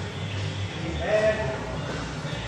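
A person's voice making a short, held, drawn-out sound about a second in, over low room noise.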